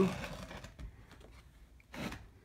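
Wooden sand-casting flask packed with rammed sand being handled and turned over by hand: a scatter of small wooden clicks and light scrapes, with a slightly louder knock near the end.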